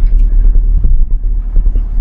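Steady low rumble of engine and road noise inside a moving Ford Escort's cabin.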